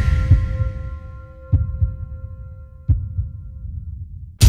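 Sound design for a logo animation: a ringing chord of a few sustained tones fading slowly away, with deep low thuds beneath it. The two strongest thuds come about a second and a half apart in the middle.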